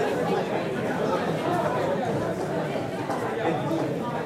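Background chatter of many people talking at once. The voices overlap into a steady babble with no single speaker standing out.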